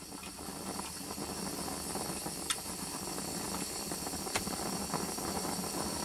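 Vintage methylated-spirit stove burner hissing steadily, growing slowly louder as it comes up to running after priming, with a couple of faint ticks.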